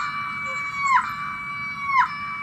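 Cartoon boy character screaming: a loud, high-pitched scream held about a second that drops sharply in pitch at the end, repeated identically twice in a row.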